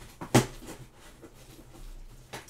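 A single sharp knock about a third of a second in as the cardboard shipping box is handled, over a faint steady low hum.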